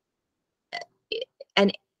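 Speech only: after a brief silence, a woman's voice in a few short, broken fragments, ending in the word 'and'.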